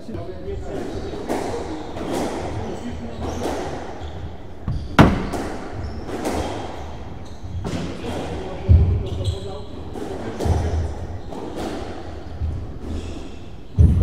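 Squash ball struck by racquets and smacking off the walls of a squash court during a rally, each hit echoing in the enclosed court; the sharpest crack comes about five seconds in, with heavier thuds later.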